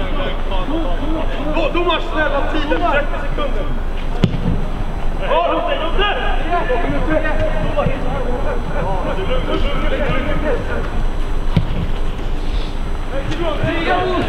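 Indistinct voices of players and coaches calling out across a football pitch, with one sharp knock about four seconds in.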